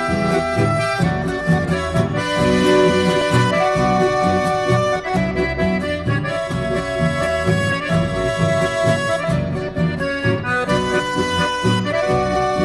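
Instrumental accordion music in a Corrientes folk (chamamé) style: accordion melody with held notes over a steady rhythmic bass accompaniment, the introduction before the singing begins.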